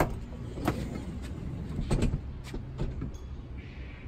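Sprinter van's sliding side door unlatched with a sharp click at its handle and slid open, with a few more knocks as it rolls along its track and comes to rest part-way open, held by the newly installed door stop.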